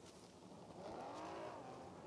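Faint car engine off in the background, its pitch rising and then falling back over about a second, starting about a second in, over low background noise.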